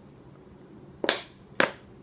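Plastic sriracha squeeze bottle sputtering twice as it is squeezed at the mouth, two short sharp spurts of air and sauce about half a second apart.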